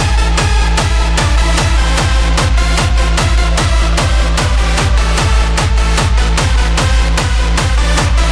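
Hardstyle dance track in a continuous DJ mix. A heavy kick drum hits on every beat, about two and a half a second, each with a falling bass tone, under sustained synth tones.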